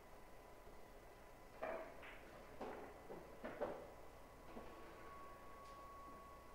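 Faint clacks and knocks of pool balls being racked on the table: a handful of short, sharp clicks bunched over about three seconds in the middle, over a faint steady high electrical tone.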